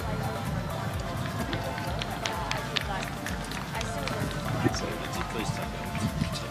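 Outdoor arena ambience: background music and distant voices over a steady low rumble, with scattered sharp clicks.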